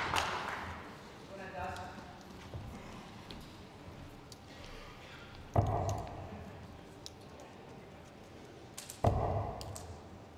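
Two darts thudding into a Winmau Blade 5 bristle dartboard about three and a half seconds apart. Each strike is sharp and fades with a short ringing tail.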